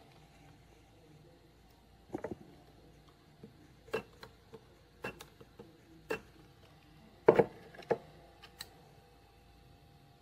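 Handheld spot-welder pen electrodes firing on copper strip laid over nickel strip on a lithium-ion battery pack, giving a series of about seven short, sharp snaps several seconds apart. The loudest snap comes about seven seconds in.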